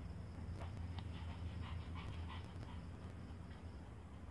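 Pomeranian dog panting faintly, a run of quick short breaths over the first three seconds or so, above a low steady hum.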